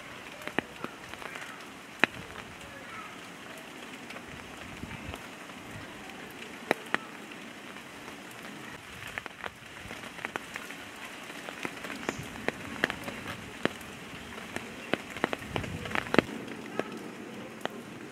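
Steady rain with irregular sharp taps of drops striking a nearby hard surface. The loudest taps come about two seconds in and in a cluster near the end.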